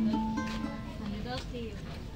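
A small acoustic guitar with a few notes held and ringing out, fading away.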